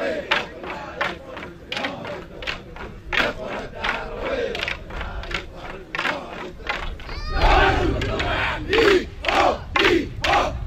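Chuukese seated stick dance: wooden sticks clacking together in a steady beat, about two to three strikes a second, under the men's chanting and shouts. The shouted calls grow louder about seven seconds in.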